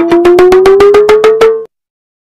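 Edited-in comedy sound effect: a pitched tone pulsing about nine times a second and slowly rising in pitch, which cuts off suddenly near the end.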